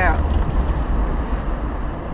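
Car cabin noise while driving: a steady low engine and road rumble with a haze of tyre and wind noise.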